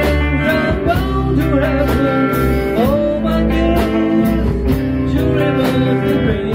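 A rock band playing live in a rehearsal room: electric guitars, electric bass and a drum kit, with a slow steady drum beat and a lead line sliding and bending between notes.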